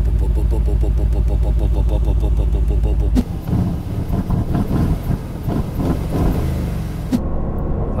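Aston Martin Vantage F1 Edition's twin-turbo V8 idling steadily at the tailpipes in Sport Plus mode, a deep, even burble. About three seconds in the sound changes abruptly to a quieter, more uneven engine and road sound. Near the end it gives way to in-cabin driving noise.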